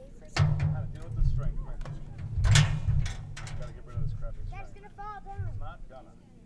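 Indistinct voices with unclear words over a heavy low rumble, with two sharp noisy bursts, about half a second and two and a half seconds in.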